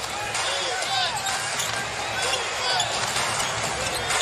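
Basketball being dribbled on a hardwood court, with short sneaker squeaks, over steady arena crowd noise.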